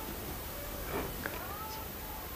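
Low steady room background with a faint, brief animal call about a second in, gliding in pitch.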